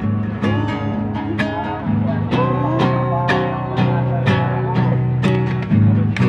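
Nylon-string classical guitar strummed in a steady rhythm, about two strums a second, ringing chords between strokes.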